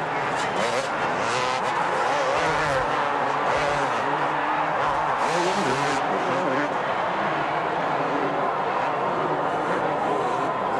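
Several two-stroke motocross bike engines revving up and down together as a pack of supercross riders races around the track.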